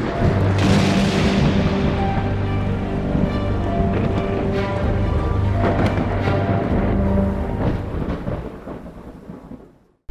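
Cinematic music of long held notes with a low thunder rumble under it, fading out over the last couple of seconds.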